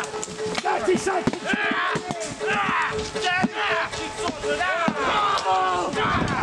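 Close-quarters melee: men shouting and yelling wordlessly over repeated sharp knocks of weapons striking wooden shields.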